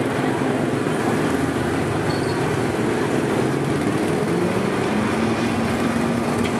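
Small gasoline engines of several go-kart-style ride cars running together in a steady drone, their pitches shifting slightly as the cars move along the track.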